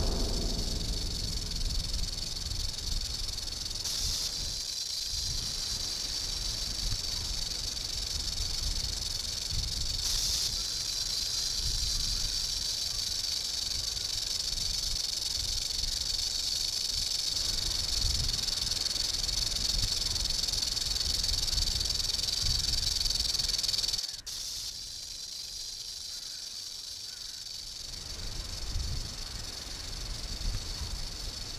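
Rattlesnake rattling its raised tail: a continuous, high, dry buzz that holds steady, then drops quieter about 24 seconds in and goes on, over a low background rumble.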